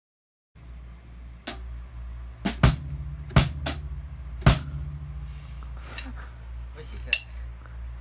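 Acoustic drum kit struck in a handful of separate sharp hits, roughly a second apart, not a steady beat, over a low steady hum.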